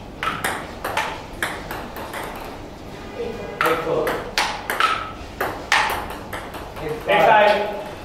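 Table tennis rally: the ball clicks sharply off the paddles and the table, about one hit every half second. Voices call out in the middle and loudly near the end.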